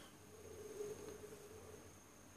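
Very quiet room tone with a faint steady high-pitched whine and no distinct event.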